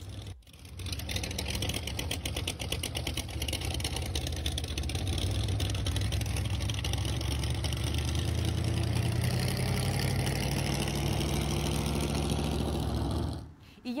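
The engine of a car built as a giant shopping cart, running steadily as it is driven. It starts about half a second in and cuts off shortly before the end.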